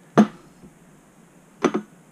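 Metal pump parts knocking against a slotted aluminium table as they are set down: a sharp knock about a fifth of a second in, then a quick double knock near the end.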